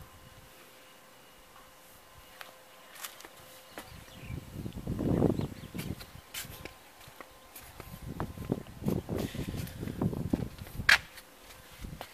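Footsteps of a person walking while holding the camera: a few seconds of quiet, then a run of irregular low thuds with a sharp click near the end.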